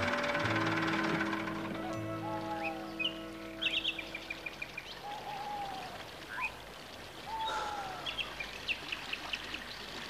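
Soft incidental music with long held notes, fading out over the first few seconds. Birdsong follows: several slurred, arching whistles and quick runs of short high chirps.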